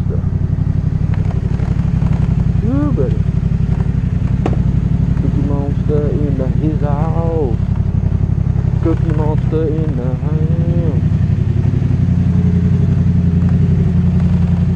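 Yamaha FZ-07's parallel-twin engine running at low revs as the bike rolls slowly, a steady deep rumble.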